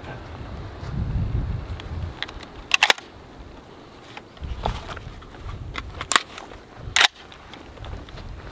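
Sharp metallic clicks of a rifle being loaded and readied: a quick double click about three seconds in, then single clicks about six and seven seconds in, as the magazine is seated and the action worked. A low rumble of handling runs under the first two seconds.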